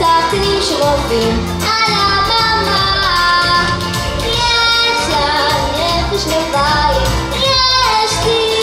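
A young girl singing a pop song into a handheld microphone over instrumental accompaniment, her sung lines held and gliding between notes.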